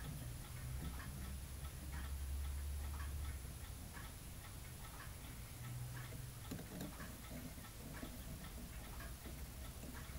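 Faint, regular ticking at about two ticks a second over a low steady hum.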